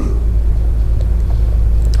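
A loud, steady low hum with no speech over it, lying under the broadcast audio; a man's voice comes back right at the end.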